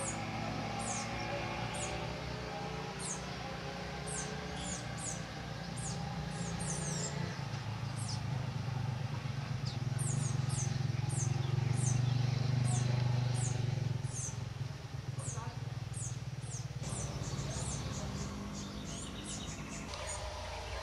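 Small birds calling: many short, high, thin downslurred notes, repeated irregularly, over a steady low hum that swells in the middle and then eases.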